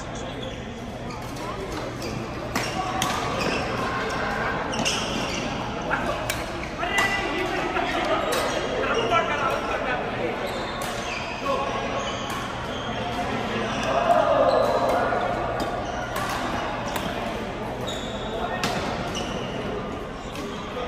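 Badminton rackets striking shuttlecocks in a large echoing sports hall: sharp hits every second or two, from more than one court, over players' voices and calls, with one louder shout about fourteen seconds in.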